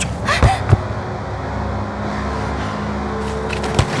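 A low, steady rumbling drone with long held tones, typical of a tense film-score build-up, with a short thump near the start and another near the end.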